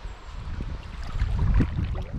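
Low rumble of wind buffeting a GoPro's microphone, rising and peaking midway, with faint water splashing from a large trout being played at the surface.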